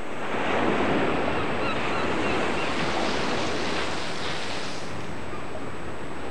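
Sea surf breaking and washing onto a beach, with wind: a steady rushing noise that swells slightly in the first second.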